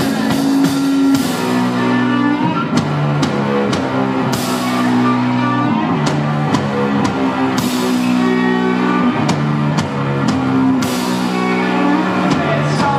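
Live rock band playing an instrumental passage: electric guitar, bass guitar and drum kit, with held bass notes that change every second or so and several cymbal crashes.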